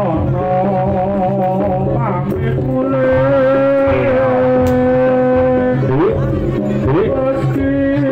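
Live bantengan accompaniment music: a long, held, wavering melody line, singing or a reed horn, over percussion, with two quick upward slides near the end.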